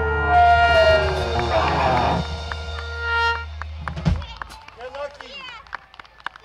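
A live band with trumpet, saxophone, electric guitar, bass and drum kit ending a song. The horns and bass hold a final chord, a horn note falls away soon after the start, a cymbal washes out, and the chord cuts off about four seconds in. After that come scattered claps and voices.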